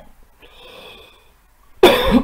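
A man coughs once, suddenly and loudly, near the end, after a second of faint hiss.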